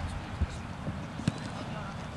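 Open-air ambience with a low, steady rumble of wind on the microphone and faint distant voices. Two short knocks come through, one a little under half a second in and a sharper one just past a second.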